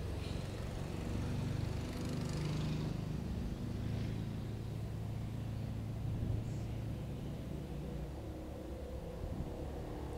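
Street traffic: a steady low hum of car and motorcycle engines, a little louder in the first few seconds.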